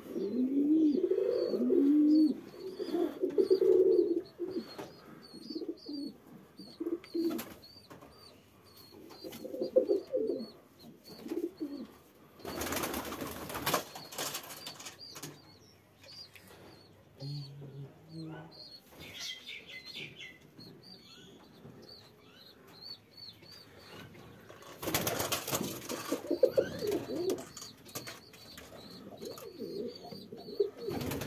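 Domestic pigeons cooing, loudest in the first few seconds and again around ten seconds in. Two loud bursts of wing flapping come about thirteen and twenty-five seconds in, and a faint high chirping repeats underneath.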